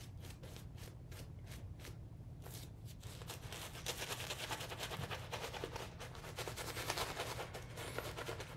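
Shaving brush scrubbing lather onto the face: a quiet, rapid scratchy crackle of bristles and foam that gets busier a couple of seconds in.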